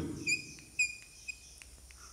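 Chalk squeaking on a blackboard while writing: a thin, high squeal lasting about a second and a half, followed by a few light taps of the chalk.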